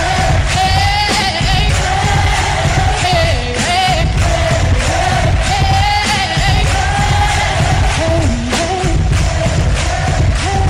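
Pop song played loud, a woman singing a held, gliding melody into a microphone over a backing track with a steady heavy beat.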